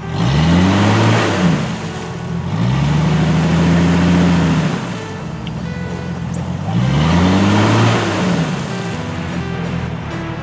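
Jeep Cherokee's engine revved hard three times, each rev rising in pitch and falling back, as the Jeep sits stuck in a soft mud puddle and loses traction. Background music plays underneath.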